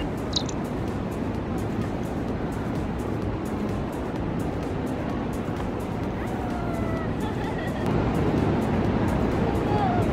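Background music with a steady beat, over the steady rush of city street traffic.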